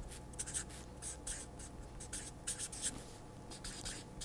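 Faint scratching of a marker pen's tip on paper in a quick, irregular run of short strokes as a word is handwritten.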